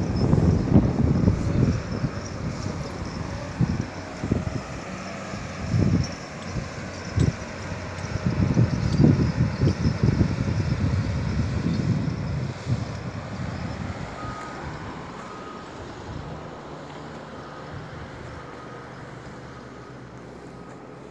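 Heavy quarry machinery working at a distance: an engine runs steadily, and from about two-thirds of the way in a reversing alarm beeps about once a second. Gusts of wind buffet the microphone in the first half.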